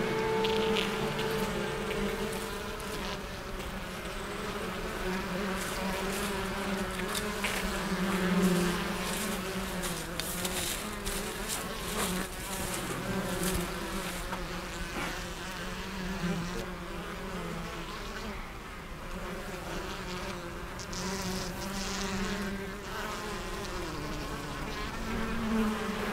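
Honeybees buzzing in numbers around a hive, a continuous low, wavering drone. A few faint clicks come through in the middle.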